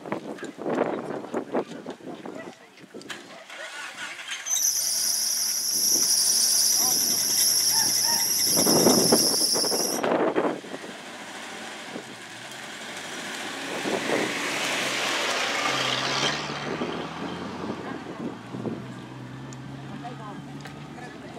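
A loud, steady, shrill squeal lasting about five seconds, amid voices, followed by a rising rushing noise.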